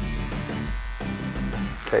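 Corded electric hair clippers buzzing steadily as they shave the hair off a tanned deer hide, cutting a line into the coat. Background music plays underneath.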